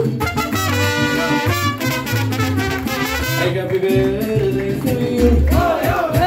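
Live mariachi band playing, with trumpets carrying the melody over a steady pulsing bass. A sung voice comes in near the end.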